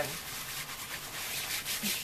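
A pad of plastic bags wrapped in bubble wrap rubbed firmly over layers of wool roving and chunky yarn, a continuous scrubbing hiss. It is the friction stage of felting, working the layers down into each other.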